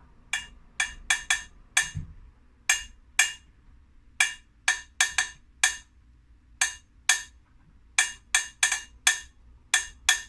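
A wooden spoon tapping the base of a small upturned metal saucepan played as a hand drum, giving sharp, bright taps. The taps fall in short groups that repeat as a slow rhythm, about two dozen strokes in all.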